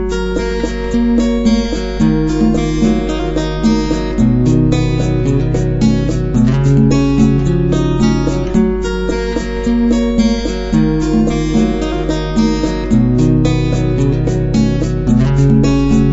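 Acoustic guitar played fingerstyle: a picked melody over moving bass notes, starting suddenly out of silence, with a steady low hum underneath.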